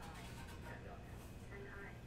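Faint, indistinct speech over a low steady hum.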